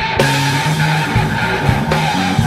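Rock trio playing, with a heavily distorted electric guitar (Stratocaster-style) giving a dense, noisy wash of sound over bass notes and regular drum hits.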